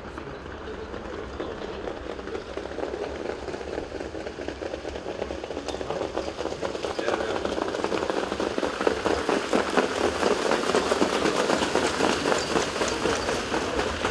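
Harness-racing trotters' hoofbeats and sulky wheels on a sand track: a dense, rapid clatter that grows louder as the field comes closer.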